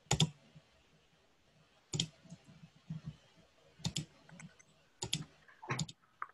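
Clicking at a computer, picked up through a video-call microphone. Sharp clicks, often in close pairs, come every second or two, with fainter taps in between.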